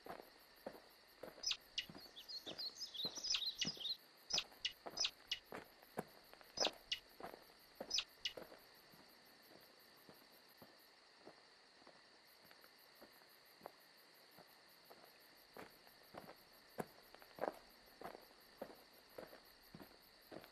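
Footsteps of a person walking over grassy ground, irregular soft steps throughout, against insects chirping steadily in a fast pulsing rhythm. Brief high chirps, like birds twittering, come in the first few seconds and again around the middle.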